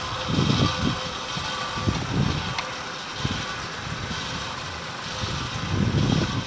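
Steady mechanical drone of a stone-crushing plant's crushers and conveyors running, with a faint constant hum, broken by a few low rumbling gusts of wind on the microphone.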